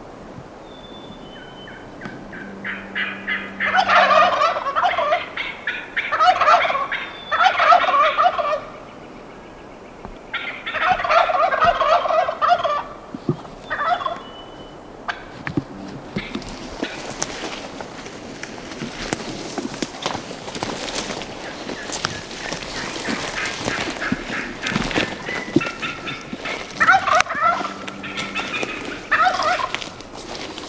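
Wild turkeys gobbling close by: a string of loud, rattling gobbles in the first half, then a stretch of rustling and crackling in the brush, and more gobbles near the end.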